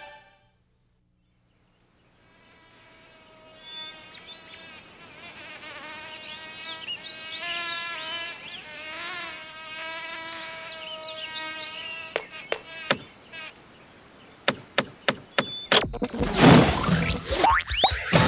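Cartoon sound effect of a flying insect buzzing, a pitched buzz that wavers up and down in pitch. After a few seconds it gives way to a run of sharp clicks and then a loud sweeping sound with gliding pitches near the end.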